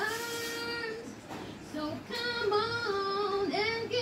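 A woman singing solo a cappella, with no accompaniment: she holds one long steady note for about a second, breaks off briefly, then sings a run of sliding, ornamented notes.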